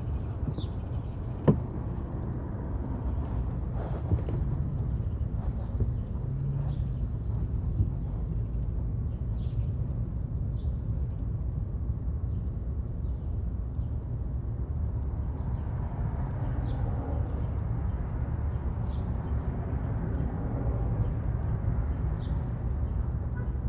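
A steady low outdoor rumble, with one sharp click about one and a half seconds in.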